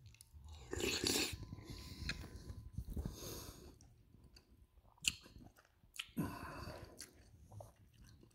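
A person chewing a spoonful of cabbage soup close to the microphone, in short irregular bursts with pauses between, and one sharp click about five seconds in.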